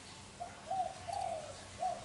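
Spotted dove cooing: four short coo notes in a row, the third held longest.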